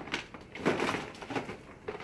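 Hands rummaging in a clear plastic box of supplies: a few light plastic knocks and rustles spread over about two seconds.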